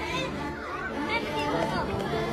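Indistinct voices chattering in the background, with music underneath.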